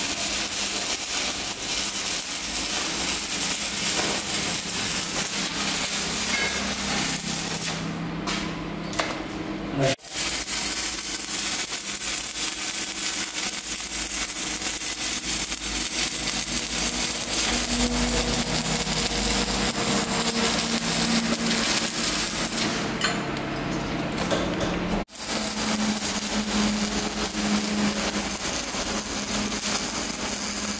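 Manual stick (arc) welding of a cap pass on a steel test plate: the arc crackles and hisses steadily, with a low hum underneath. The sound cuts off sharply twice, about ten seconds in and again about 25 seconds in.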